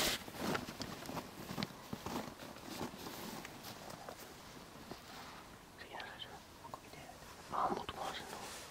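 Low whispering close to the microphone over faint, irregular clicking and crunching: a beaver gnawing bark off a branch.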